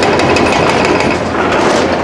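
Excavator-mounted hydraulic breaker hammering concrete in a fast, continuous run of blows, with the excavator's engine running underneath.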